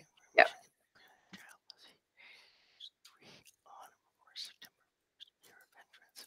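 Speech only: a short spoken "yep", then faint whispering and small scattered clicks.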